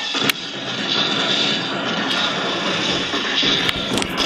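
Rustling and handling noise on a camera microphone as the camera is carried in a rush, with a sharp click about a third of a second in and a smaller one near the end.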